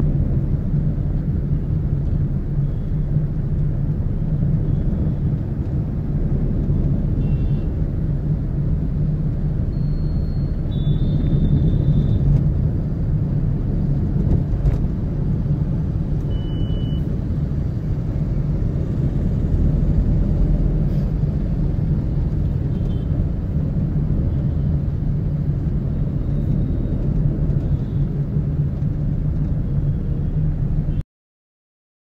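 Steady low rumble of a moving vehicle driving through city traffic. A few short high beeps stand out around ten to twelve seconds in and again about sixteen seconds in.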